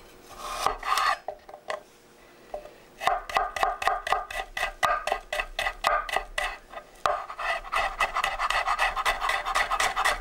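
Kitchen knife cutting garlic cloves on a wooden cutting board. A short scraping cut comes near the start. From about three seconds in, rapid, even strikes of the blade on the board follow, about five a second.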